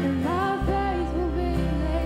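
A worship band performing live: several female voices singing a melody together over guitar, with low sustained bass notes underneath that change pitch about half a second in.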